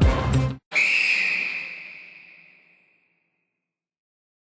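The rap track's music cuts off about half a second in, followed by one long whistle blast: a single high, steady tone that fades away over about two seconds.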